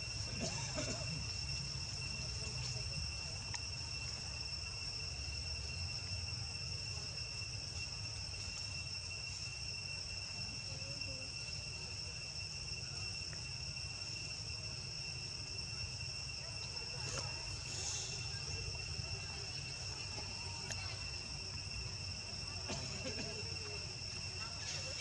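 Steady high-pitched insect drone in two unbroken tones, over a low background rumble.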